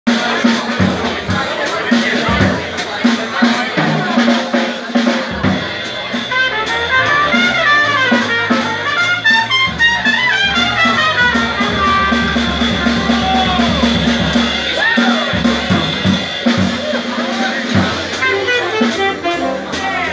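Live jazz combo playing: a trumpet runs fast melodic lines over a busy drum kit.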